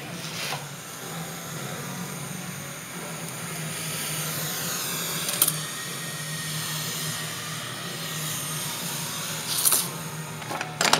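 A steady low hum, with a sharp click about halfway through and a short rattle of clicks near the end as the carburetor is handled and set down on the workbench.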